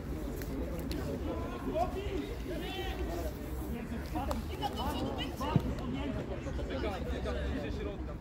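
Indistinct, overlapping voices of players and onlookers calling across a football pitch, with a single sharp knock a little past halfway through.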